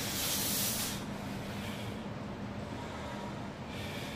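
A man's sharp, hissing breaths forced out during weighted pull-ups, one with each rep about every two seconds, the first the loudest.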